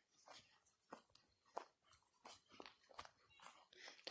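Faint footsteps crunching on the twig- and needle-strewn forest floor, a soft step about every half second.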